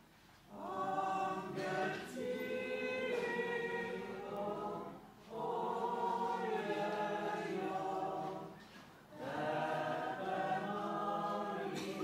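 Choir singing the closing hymn of the Mass, in sustained phrases of about four seconds with short breaks for breath between them.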